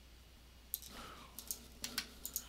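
About five faint, sharp clicks of a computer mouse, the first about three-quarters of a second in and two in quick succession near the middle.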